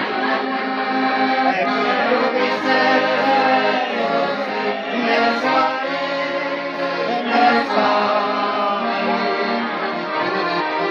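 Chromatic button accordion playing a folk tune with sustained chords, a man's voice singing along over it.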